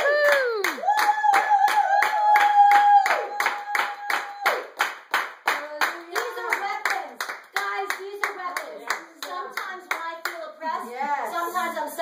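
Hands clapping in a brisk, steady rhythm, about three claps a second. Over it a woman's voice whoops up and down at the start, then holds one long high note for about three seconds, and excited voices talk and call out in the second half.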